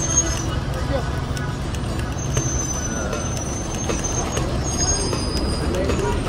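Large buses running close by: a steady low engine rumble, with scattered voices from a walking crowd and a thin high whine for a couple of seconds in the middle.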